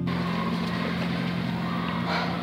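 Steady low hum with an even hiss over it; the hiss comes in suddenly at the start.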